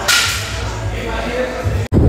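A sharp swish at the very start, then a steady low background hum that cuts off abruptly near the end.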